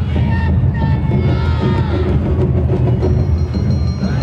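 Live Awa Odori festival music from a dance troupe's band: steady drumming with a pitched melody line above it, over a murmuring crowd.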